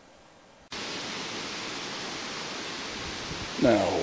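Near silence, then a sudden start under a second in of a steady, even rushing hiss of outdoor ambience; a man's voice begins near the end.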